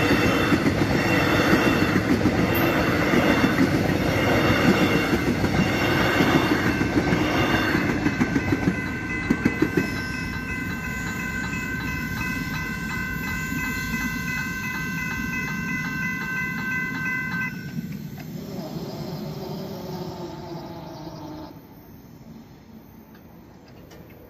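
An Alstom X'Trapolis electric train passes over a level crossing with a regular beat of wheels over the rail, while the crossing's electronic bells ring steadily. The train noise drops away about eight seconds in, and the bells stop about seventeen seconds in.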